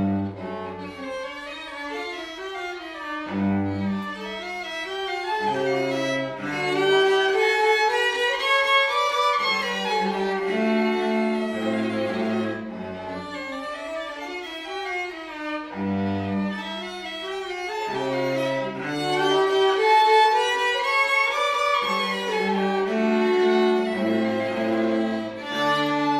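A student string quartet, with three violin-family instruments over a cello, playing a piece together. Sustained bowed melody runs on top, while the cello's low notes come in phrases that recur about every six seconds.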